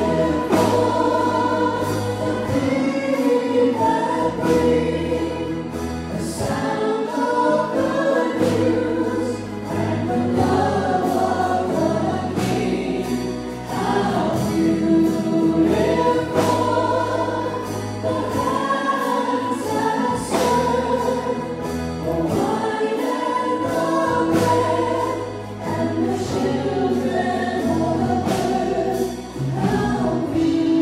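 Praise band performing a worship song: several voices singing together over guitars and a drum kit, with a steady beat.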